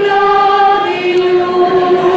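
A choir singing long held notes, the line stepping down to a slightly lower note about a second in.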